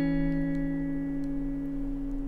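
Background music: a single guitar chord struck right at the start and left ringing, slowly fading.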